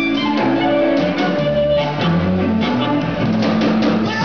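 Live electric blues band playing: an amplified harmonica cupped against a handheld microphone, over electric guitar, bass and drum kit.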